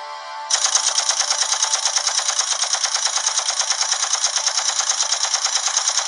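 Rapid-fire gun sound effect: a fast, even stream of shots, about eight a second, starting about half a second in and going on without a break.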